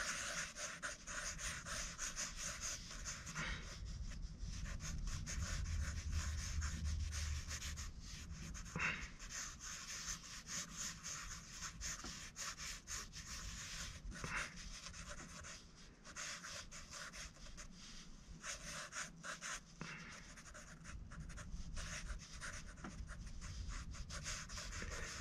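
Felt-tip marker scribbling on sketchbook paper: faint, fast scratchy strokes, coming in runs with brief pauses.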